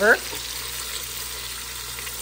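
Beef pot roast searing in hot bacon grease, a steady sizzle.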